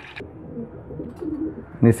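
Domestic pigeon cooing quietly, a low coo that swells a little after a second in.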